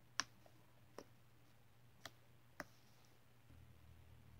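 Homemade white slime being pressed and poked with fingers, giving four sharp clicks spread over a few seconds, the first the loudest, against near quiet.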